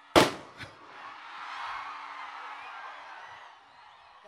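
A confetti cannon goes off with a loud, sharp bang, followed by a smaller pop about half a second later. Crowd cheering then swells and fades over the next few seconds.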